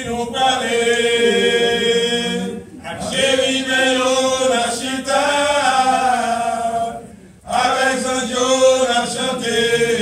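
Men's choir singing a hymn in long, sustained phrases, breaking off briefly twice.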